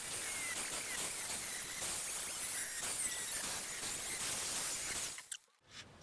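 Angle grinder with a cut-off disc cutting through rusted double-skin steel wing panel. It gives a steady, high grinding noise that cuts off about five seconds in.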